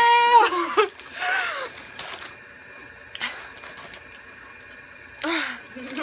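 A woman's high, drawn-out squeal lasting under a second at the start, then a short falling groan and, a little after five seconds, a breathy gasp, with a quiet stretch between. These are wordless reactions to the burn of eating Hot Cheetos.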